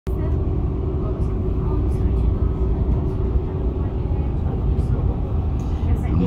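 A passenger train running, heard from inside the carriage: a steady low rumble with a few faint clicks.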